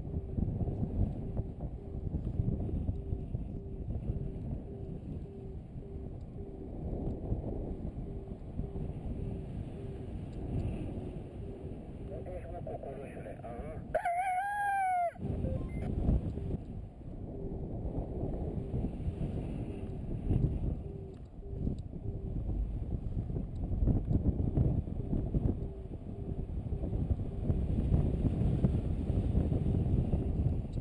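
Wind rushing over the microphone in flight, with a paragliding variometer beeping steadily at one pitch about twice a second. About halfway through the wind noise cuts out for a second and a single rooster-like crow rises and falls.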